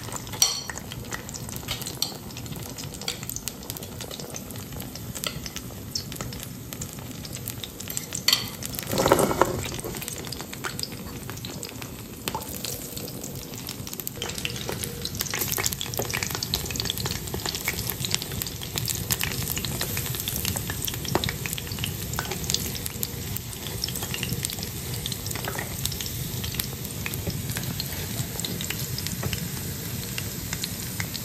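Potato patties sizzling in hot oil in a frying pan, with wooden spatula and fork clicking and scraping against the pan as the patties are turned. There is one louder scrape about a third of the way in, and the sizzling grows louder from about halfway on.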